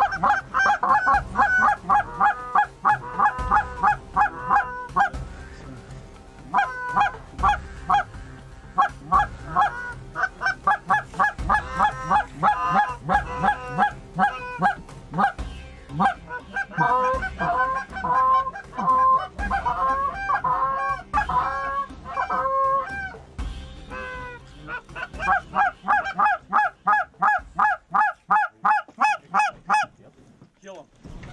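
Fast, continuous Canada goose honking and clucking, about four or five calls a second, with a short break about five seconds in and a fade near the end.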